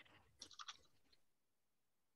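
Near silence, with a few faint short clicks about half a second in.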